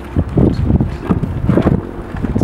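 Wind buffeting the camera microphone in irregular low rumbling gusts.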